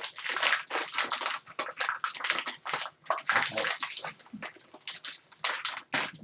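Plastic blind-bag packaging being crinkled and torn open by hand, a dense run of irregular crackles.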